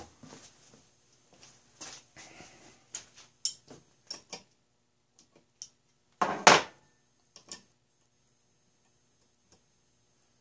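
Steel wrenches and small metal parts clicking and knocking on a wooden workbench and against the engine as a wrench is picked up and tried on a fitting of a model steam engine, with one louder clatter about six and a half seconds in.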